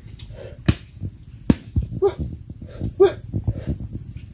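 Sharp knocks of a mangrove log being struck and broken open to get at the shipworms (tamilok) inside, several hits in the first two seconds. Two short vocal sounds come in between, about two and three seconds in.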